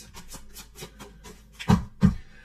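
Tarot cards being handled: faint rubbing, then two short thumps near the end.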